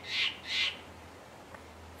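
A squirrel calling: two short, harsh chattering calls in quick succession, the second about half a second after the first.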